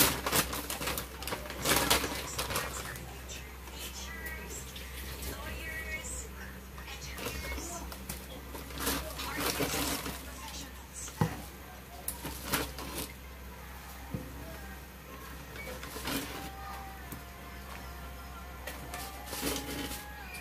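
Pork pieces boiling in broth in a wide metal wok, bubbling with irregular pops and crackles over a steady low hum.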